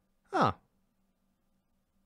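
A man's single short "huh" with a falling pitch, voicing surprise at something he has just noticed.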